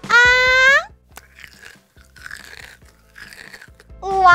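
A short, loud rising tone, then three quieter crunching, chewing sounds: a pretend-eating effect for a toy doll biting a piece of kohakuto jewel candy.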